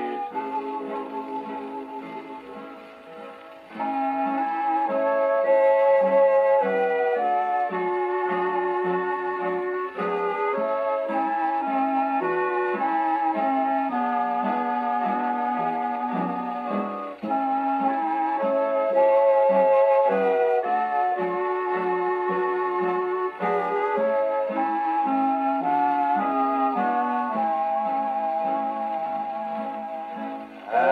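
A shellac 78 rpm country string-band record playing on an HMV 102 wind-up portable gramophone during an instrumental break with no singing. The sound is narrow and boxy, with no deep bass and no high treble. It dips briefly about three seconds in, then the band comes back in fully.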